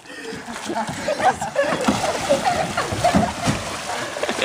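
Water splashing and sloshing as a small boat is flipped over in the water, with voices and laughter over it.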